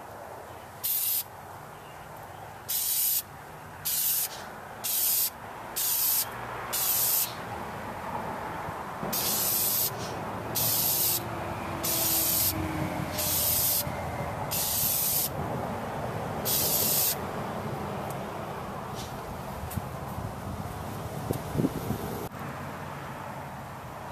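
Aerosol spray paint can spraying in about a dozen short bursts of hiss, each half a second to a second long with brief gaps between them, as light coats of paint go on. The bursts stop a few seconds before the end.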